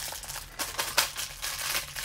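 Plastic packaging crinkling and rustling as a toy blind box and its wrapper are handled, with a sharper click about a second in.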